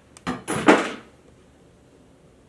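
Hand conduit bender forming a bend in steel EMT conduit: a couple of sharp clicks, then two short bursts of metal scraping and creaking as the handle is pulled, loudest just before a second in.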